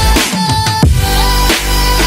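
Electronic intro music with a heavy bass and a steady drum beat.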